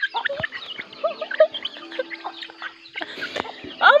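Chickens clucking, a scattered string of short calls.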